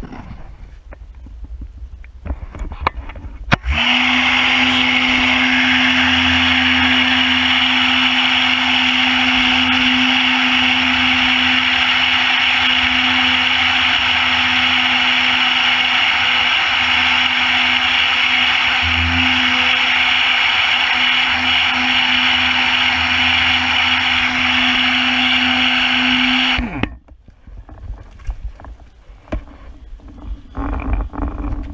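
Pressure washer running, with a steady pump hum and the hiss of its water jet spraying onto a snow-foamed car roof. It starts abruptly about four seconds in and cuts off suddenly near the end.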